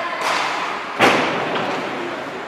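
A hard hockey puck impact rings out about a second in, a sharp crack that echoes around the ice arena, with a lighter knock shortly before it.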